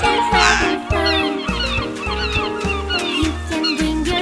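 Seagulls calling again and again, loudest about half a second in, over upbeat children's backing music with a steady bass beat.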